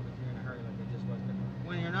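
Quiet, broken-up speech over a steady low hum.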